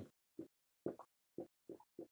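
Dry-erase marker writing on a whiteboard: about six short, faint strokes as letters are written.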